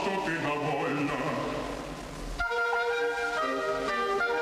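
Opera orchestra playing an instrumental passage of the accompaniment. The music dips briefly, then new sustained chords come in about two and a half seconds in.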